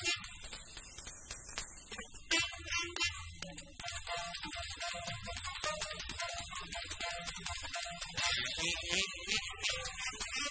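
Acoustic jazz quartet of tenor saxophone, piano, double bass and drums playing, with cymbals running steadily beneath the melody.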